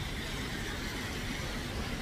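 Steady background traffic noise of a city street: an even low rumble with no distinct events.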